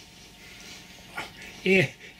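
Mostly a pause with faint room hiss, then near the end a short voiced sound from a man, rising and then falling in pitch.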